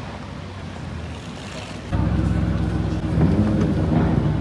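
Low street and traffic noise at first, then, about two seconds in, a sudden switch to the louder, steady idle of an Audi RS6 Avant's twin-turbo V8 at close range.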